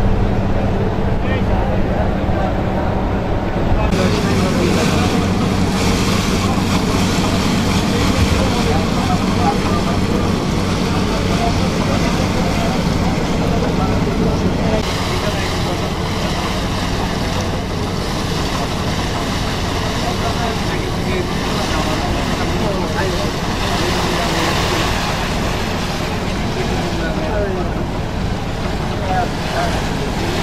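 A small river boat's engine running steadily as the boat travels, with wind and water noise over it that grows brighter about four seconds in.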